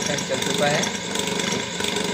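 Bare pedestal-fan motor, with no blade fitted, running steadily on mains power through its newly wired capacitor connection.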